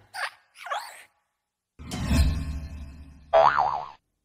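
Cartoon sound effects for an animated hopping desk lamp, heard through a phone's speaker: two short springy boings, then a heavy thud with a low rumble about two seconds in, then a wavering warble near the end.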